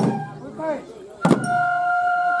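A group of transverse flutes playing lion-dance music on a held note is cut off by a sharp percussive strike at the start. After a short gap with voices, a second strike comes about 1.3 seconds in and the flutes pick up the held note again.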